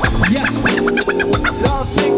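Turntable scratching over a hip-hop beat: a quick run of short back-and-forth record scratches, each sweeping up or down in pitch, with the bass line and drums running underneath.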